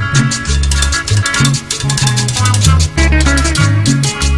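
Salsa music: an instrumental stretch with a deep bass line moving note to note and a fast, steady shaker rhythm over it, no singing.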